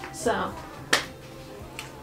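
A short vocal sound, then one sharp click about a second in, the loudest sound here, and a fainter click near the end.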